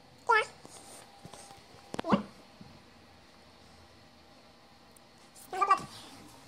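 Three short animal calls: a brief one just after the start, a longer one falling in pitch about two seconds in, and another near the end.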